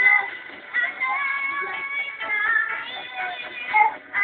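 A live band playing a song, with electric guitar, drums and keyboard under a high melody held in long notes. The sound is thin and muffled, with nothing in the upper treble, as heard from a TV set's speaker.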